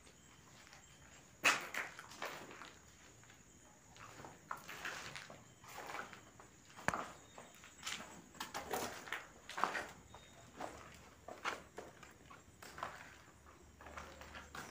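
Footsteps walking at an unhurried pace, uneven steps roughly one a second, the first, a little over a second in, the loudest.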